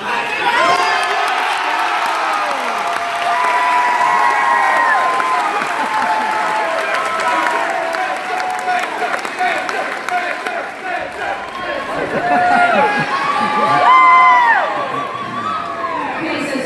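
A crowd of high school students cheering, shouting and whooping in a gymnasium, many voices at once. The cheering starts up right at the beginning and swells to its loudest near the end.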